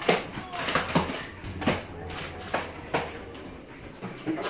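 Irregular knocks and clicks, about two a second, from a manual wheelchair being handled and rolled across a laminate floor, over a low steady hum.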